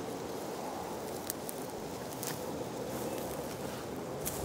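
Footsteps and rustling in dry grass and fallen leaves, with a few sharp crackles of leaves crunching.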